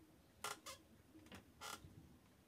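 Four short, faint strokes of a pencil tip on textured watercolour paper, drawing fine whisker lines.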